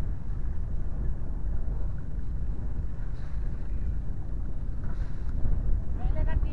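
Steady low rumble of wind buffeting the microphone aboard a small wooden fishing boat at sea.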